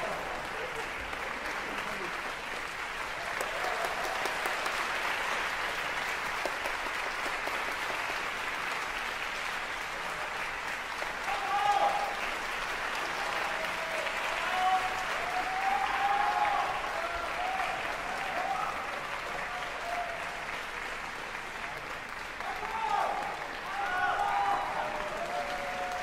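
Audience applauding steadily in a concert hall. Voices call out over the clapping a few times in the second half.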